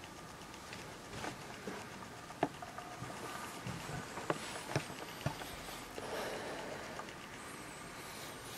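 Quiet footsteps on a carpeted floor scattered with debris, with a few sharp light clicks and taps from something being stepped on or brushed against between about two and five seconds in.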